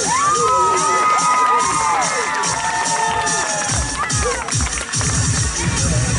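Many young voices cheering and shouting together, with long, high 'woo'-like calls overlapping, after a cheerleading stunt is held up. About four seconds in, dance music with a heavy beat starts.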